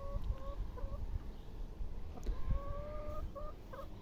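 Brown laying hens calling and clucking, with two long, drawn-out calls: one ending about half a second in, another about two and a half seconds in lasting nearly a second and rising slightly.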